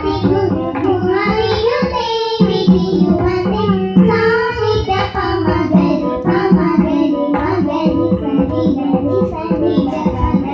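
Group of young girls singing a devotional song in unison through a PA system, accompanied by a hand-played two-headed barrel drum.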